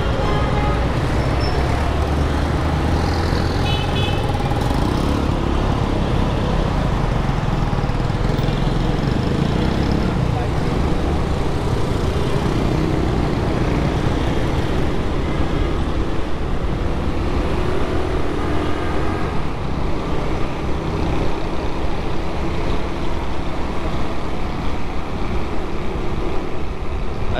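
Busy city street traffic: steady motor-vehicle engine and road noise, with a short horn toot about four seconds in.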